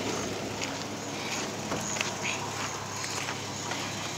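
Quiet outdoor background: a faint steady hiss with a low steady hum underneath and a few faint scattered ticks.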